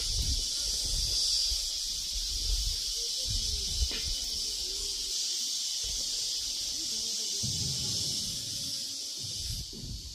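Steady high-pitched drone of insects in the surrounding vegetation, over an uneven low rumble.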